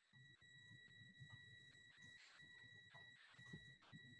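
Near silence: faint room tone from an open video-call microphone, with a faint steady high-pitched tone running through it.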